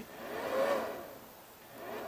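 A rush of air-like noise with no clear pitch that swells and fades twice.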